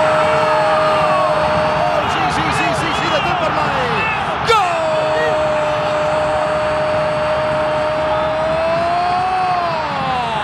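Spanish-language football commentator's drawn-out goal cry, one long held note that breaks off about two seconds in. After a few shorter shouts, a second long held cry begins at about four and a half seconds and falls in pitch near the end, over crowd noise.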